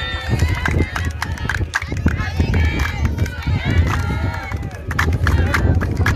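Several men's voices talking over one another as they greet, with a steady low rumble of wind on the microphone underneath.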